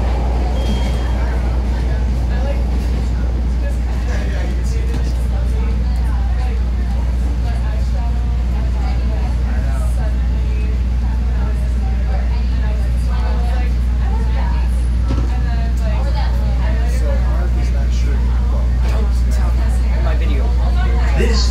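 CTA Red Line subway train running through the tunnel and into a station, a steady low rumble that does not let up, with passengers talking over it.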